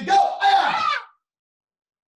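A man's shouted command "go", then a loud karate kiai shout as a side kick is thrown, lasting about a second.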